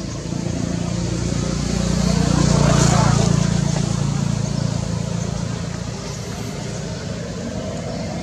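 A motor vehicle passing by: its engine and road noise grow louder to a peak about three seconds in, then fade away.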